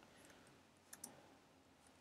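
Near silence with a couple of faint computer-keyboard key clicks about a second in, as a key is typed.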